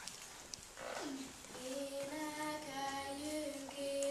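A girl singing a Hungarian folk song solo and unaccompanied. Her voice comes in about a second in with a short downward slide, then moves through long, steady held notes.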